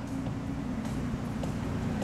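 A sheet of water from a pool's water-curtain feature pouring steadily into the pool: a continuous rush with a deep rumble underneath.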